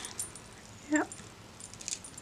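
Beads and the metal lobster clasp of a handmade chunky charm clicking and jangling faintly as it is handled.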